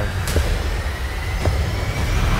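Trailer sound-design build-up: a dense rumbling noise with a faint tone slowly climbing in pitch and a couple of soft clicks.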